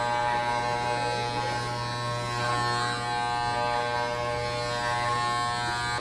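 Corded electric hair clippers buzzing steadily, cutting a child's hair.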